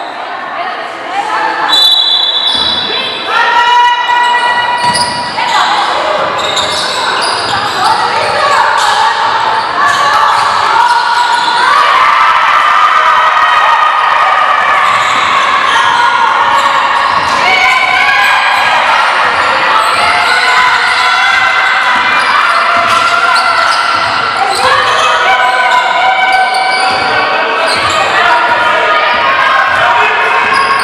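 A basketball bouncing on a gym floor during play, with players' and spectators' voices calling out and echoing in a large sports hall.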